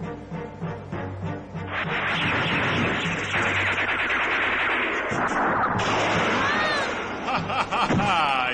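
Dramatic cartoon score with a regular beat, then from about two seconds in a loud, sustained laser-blast and explosion sound effect, with sweeping electronic tones near the end.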